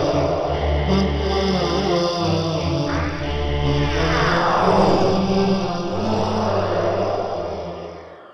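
Closing-credits theme music: a chant-like vocal over a low sustained drone, with rising and falling sweeps in the middle, fading out near the end.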